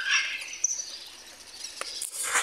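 Birds chirping: a few short, high-pitched calls.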